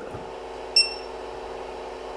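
A single short, high beep from the Creality CR-10 SE printer's touchscreen as an on-screen button is pressed, heard over the steady hum of the printer's power supply fan, which runs a little loud.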